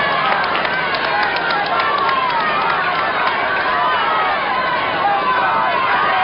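Wheel of Fortune prize wheel spinning, its pegs clicking against the rubber pointer, the clicks spacing out as the wheel slows over the first three seconds or so. Studio audience shouting and cheering throughout.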